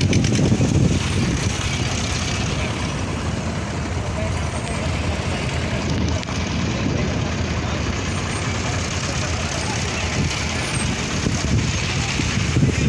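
Steady low rumble of truck engines, with people's voices in the background.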